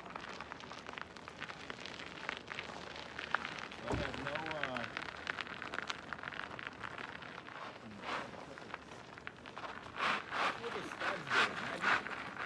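Fat-bike tyres rolling and crunching over icy, snow-covered gravel: a steady crackle, with several louder short crunches near the end as a bike passes close.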